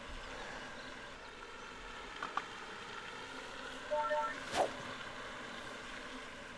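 Quiet outdoor background noise with no talking. A brief held tone of several notes comes about four seconds in, and a short laugh follows just after.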